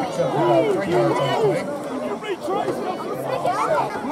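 Several people talking at once close to the microphone: overlapping spectator chatter, with no single voice standing out.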